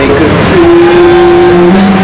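Loud, steady din of a busy eatery: many people's voices overlapping with road-traffic noise.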